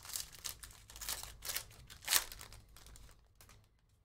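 Foil trading-card pack being torn open by hand: a run of crackly crinkling and tearing rustles, the loudest about two seconds in, thinning out toward the end.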